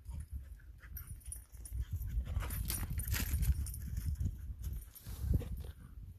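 Footsteps crunching irregularly on a stony, snowy trail, with wind rumbling on the microphone.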